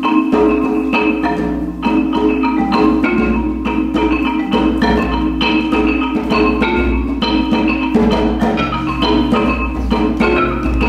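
Marimba played with four yarn mallets, a fast run of dance music with many rapid, ringing notes.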